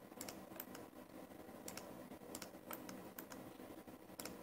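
Faint, irregular clicking of a computer mouse and keys during CAD work, about a dozen clicks at uneven intervals over a low steady room hum.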